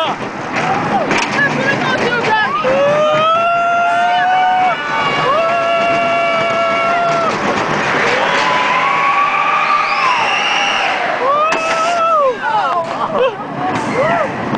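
Riders screaming and whooping on a steel roller coaster: a string of long held screams, one after another, over the rush of wind and the train running along the track.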